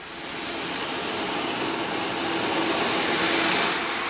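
Meinl 22-inch sea drum tipped inside its cardboard box, its beads rolling across the drumhead in a wave-like rush that builds gradually and peaks near the end.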